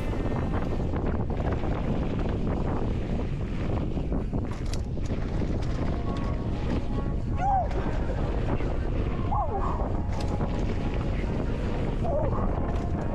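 Wind rumbling on a mountain biker's GoPro microphone during a downhill run, with a few short sliding pitched sounds in the second half.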